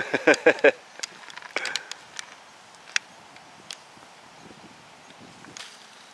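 A man laughing briefly, then a handful of sharp, light clicks or knocks spaced out over the next few seconds against a quiet background.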